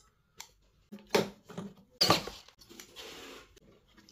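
Handling noise while soldering wires to a small tweeter's terminals: two short crackling rustles about one and two seconds in, then a soft hiss.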